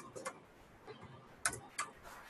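Faint computer keyboard keystrokes: a handful of separate key clicks as a word is typed letter by letter, a pair near the start and another pair about a second and a half in.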